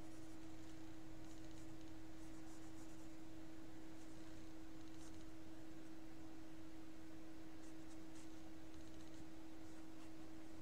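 Faint, scattered scratches of drawing on sketch paper while shading in a drawing, over a steady low hum.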